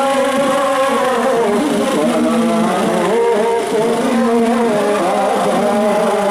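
A group of men chanting an Urdu noha, a Shia mourning lament, together in unison, their voices holding long notes.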